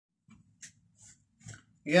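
Faint movement noises from a person settling close to the microphone: a low rumble with three short hisses. A man's voice starts just before the end.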